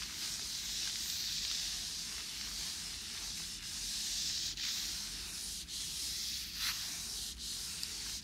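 White tissue paper rubbed briskly back and forth against a surface close to the microphone: a continuous dry swishing hiss that swells and fades with each stroke, with a few short scratchy strokes.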